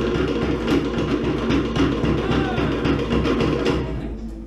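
Cook Islands drum ensemble playing a fast, driving rhythm on wooden slit log drums (pate) over a deeper drum beat, ending abruptly right at the end.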